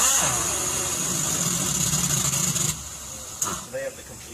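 TorcUP Raptor 1000 non-impacting pneumatic torque wrench running on a Detroit Diesel engine's main bearing bolts: a loud air hiss with a steady motor hum beneath starts suddenly and runs for nearly three seconds, then cuts off. A brief second hiss follows about a second later.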